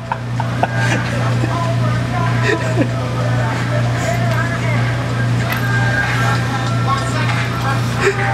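Bar-room background: a steady low hum under faint, indistinct chatter.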